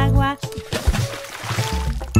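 Animated sound effect of a baby splashing into a swimming pool: water splashing and sloshing for over a second, just after a short wavering voice. The children's song music drops out for the splash and comes back at the end.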